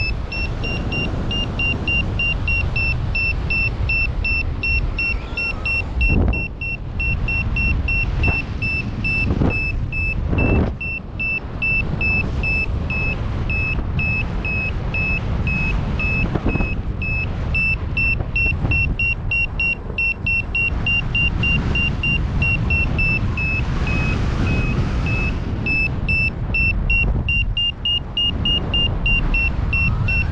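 Paragliding variometer beeping steadily, a rapid train of short high beeps about two or three a second, the sound of the glider climbing in lift. Wind rumbles on the microphone underneath, with stronger gusts about six and ten seconds in.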